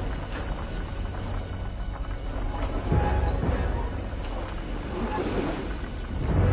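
Large boulder rolling along a railway track: a low, steady rumble with a couple of heavier thuds about halfway through, under tense dramatic music.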